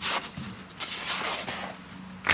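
Paper pages of an instruction manual rustling and sliding as they are turned and smoothed by hand, in uneven bursts, the loudest right at the start and another about a second in.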